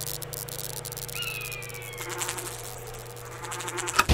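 A steady low buzzing drone with crackling static over it, and a short falling whine about a second in.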